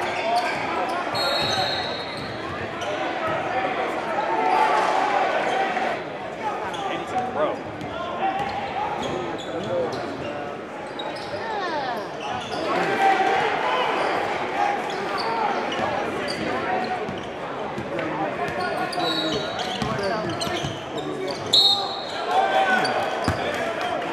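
Live gym sound of a basketball game: a basketball bouncing on the hardwood court and a crowd of spectators talking in the echoing hall, with a couple of brief high sneaker squeaks, one about a second in and one near the end.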